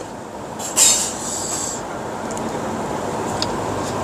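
Steady background noise of an outdoor street setting, with a brief sharp hiss about a second in.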